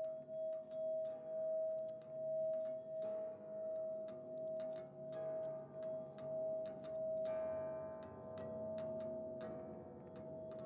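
A sustained ringing tone that swells and dips slowly in loudness, with faint scattered clicks. About seven seconds in, brighter overtones join it.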